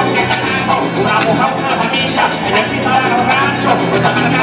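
Live joropo music from a llanero band: harp with a fast, steady rhythm of maracas and plucked strings.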